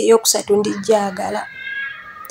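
A woman speaking in short phrases, then a thin, high, drawn-out tone for the last half second or so.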